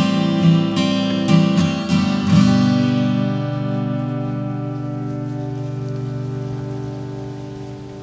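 Martin HD-28 dreadnought acoustic guitar strummed a few times, then a final chord left to ring and slowly fade away: the closing chord of the song.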